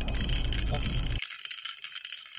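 Edited-in sound effect, a bright, dense jingling shimmer laid over a censored word. The low car rumble beneath it cuts out about a second in.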